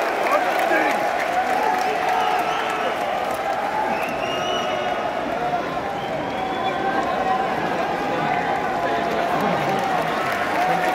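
Large stadium crowd of football supporters cheering, shouting and clapping: a steady wash of many voices with no single rhythm.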